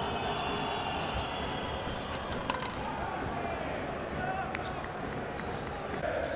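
Indoor basketball game sound: steady arena crowd noise, with a basketball being dribbled on the hardwood court and a few short sharp clicks and squeaks from play on the floor.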